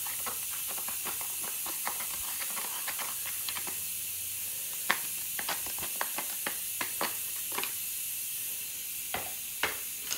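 Irregular light clicks and scrapes of a hand tool chiselling and scraping packed dirt out of a rear coil-spring seat, a few sharper knocks about halfway and near the end, over a steady hiss.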